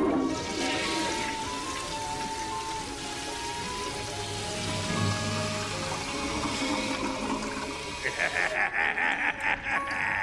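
Cartoon score playing under a steady rushing, hissing sound effect. Near the end a rapid pulsing sound comes in over it.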